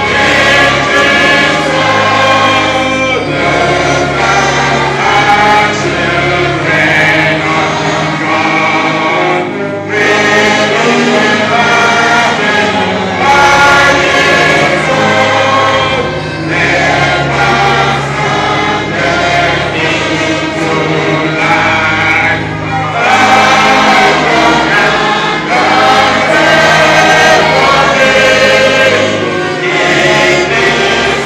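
A congregation singing a gospel hymn in chorus, with a low instrumental bass line under the voices. The singing carries on steadily, with short breaks between lines.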